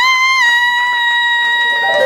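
Female jazz vocalist holding one long high note unaccompanied: it wavers briefly at the start, then holds steady. The band comes back in right at the end.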